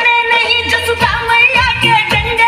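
A Hindi song playing: a sustained, bending sung melody over a bass line that enters about half a second in.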